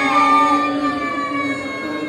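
Several voices chanting together in long, held notes with slow pitch bends, carried by the mosque's loudspeakers.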